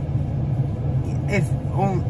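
Steady low hum of a car idling, heard from inside the cabin, with a voice starting about a second in.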